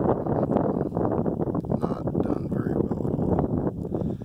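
Strong wind buffeting the microphone: a loud, steady, rough rumble.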